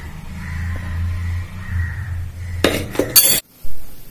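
Steel spoon clinking against a bowl a few times near the end, over a low steady hum.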